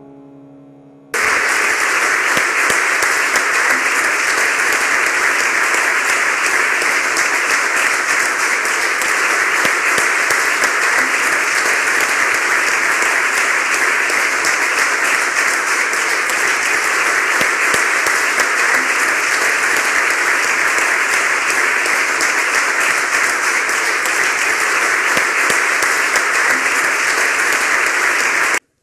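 Audience applauding: a dense, steady round of clapping that starts abruptly about a second in and keeps an even level throughout.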